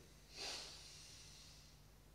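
One audible breath, a short airy rush about half a second in, taken during a slow t'ai chi arm-raising breathing exercise; the rest is low, steady background hum.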